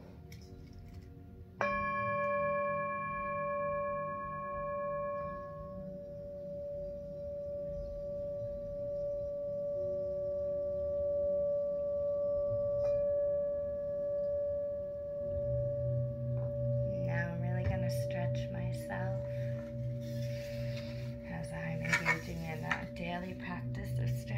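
Tibetan singing bowl struck with a mallet about a second and a half in, ringing with several tones at once; the higher ones die away within a few seconds while the lowest keeps sounding. A second, lighter strike comes about halfway through and keeps the bowl ringing, and a voice sounds over it near the end.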